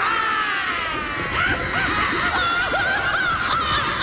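Witch cackling mixed with a woman's laughter, from an edited haunted-house sound-effects clip: a high shriek slides down in pitch over the first second, then a high, wavering cackle runs on.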